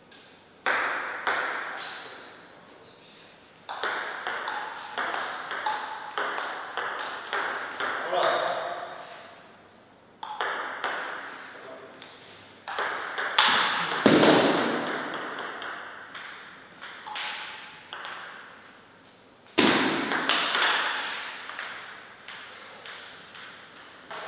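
Table tennis rallies: the ball clicking sharply off the paddles and the table in quick strings, several rallies with short pauses between points.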